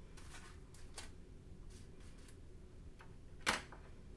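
Faint clicks and light paper rustling as small sublimation earring blanks are flipped over on parchment paper with a small hand tool, with one sharper tap about three and a half seconds in.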